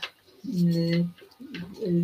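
A woman's voice making a long, steady hesitation sound, a held 'yyy' at one pitch, then a shorter one, between phrases.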